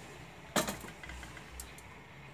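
A single sharp knock of kitchenware being handled about half a second in, then a couple of faint ticks, over a low steady hum.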